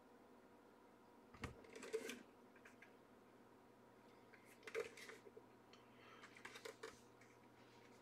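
Faint clicks and light knocks from a plastic football helmet with a suspension harness being turned over in the hands, with near silence between them. Small clusters come about a second and a half in, near five seconds, and again around six to seven seconds.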